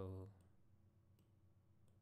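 Near silence with a few faint, sharp clicks of a computer mouse.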